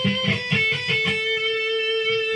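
Electric guitar playing the end of a lick in A minor pentatonic: a few quick picked notes, then one note held and ringing for over a second.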